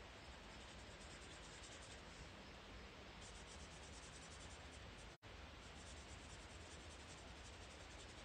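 Faint scratching of an alcohol marker colouring on cardstock, blending a light blue into a darker blue. The sound cuts out briefly about five seconds in.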